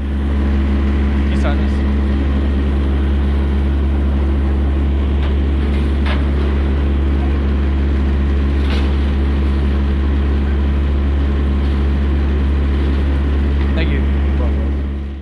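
Diesel engine of a parked refrigerated delivery truck running steadily at idle: a loud, even low hum that holds one pitch throughout, with a few light clicks on top.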